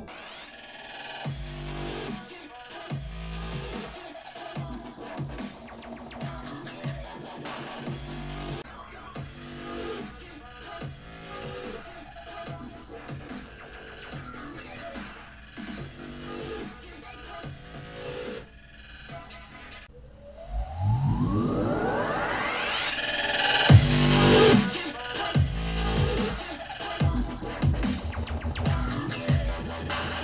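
Electronic dance music with a dubstep beat playing through an Apple HomePod mini smart speaker for a sound test. About two-thirds through, a long rising sweep builds into a louder, bass-heavy drop.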